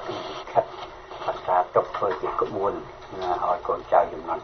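Speech only: a voice reading radio news in Khmer.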